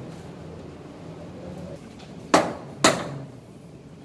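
Two sharp knocks about half a second apart, over low room noise.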